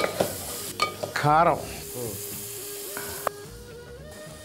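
Food sizzling as it fries in a steel pan on the stove, stirred with a spatula. A brief voice cuts in about a second in.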